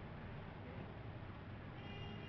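Steady low rumble and hiss of background room noise, with no clear event standing out; a faint pitched sound begins right at the end.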